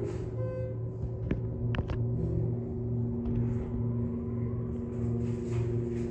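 Schindler elevator car travelling upward, with a steady low hum and rumble from the ride and a couple of light clicks about two seconds in. Background music plays along with it.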